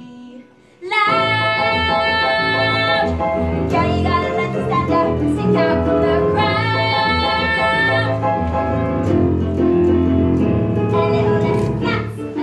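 A song with a group of children singing over a loud backing track. It starts suddenly about a second in and has long held sung notes.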